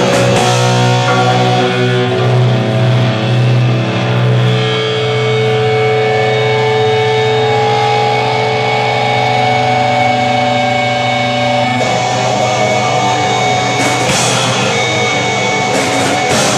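Hardcore punk band playing live and loud: distorted electric guitars with drums. The guitars hold long ringing chords through the middle, the part changes about three-quarters of the way through, and crashing drum hits come in near the end.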